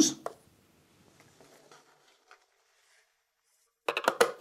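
Mostly near silence, then a few sharp clicks near the end: a screwdriver working a self-tapping screw into the plastic base of the case.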